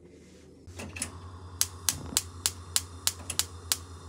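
Gas hob burner being lit: the spark igniter clicks about three times a second, nine or so sharp clicks, over a low steady hum that starts just before.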